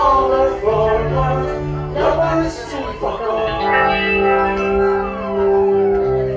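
Live band music with no sung words: acoustic and electric guitars play an instrumental passage between sung lines, with chords held steady through the second half.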